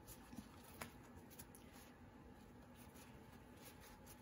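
Near silence: room tone, with faint soft handling noises from a wet, folded paper towel being slowly opened by hand, and a small tick just before a second in.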